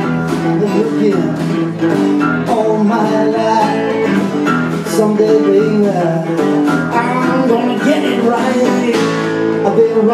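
Live band music: a steel-string acoustic guitar strummed together with an electric guitar, a steady rhythm running throughout.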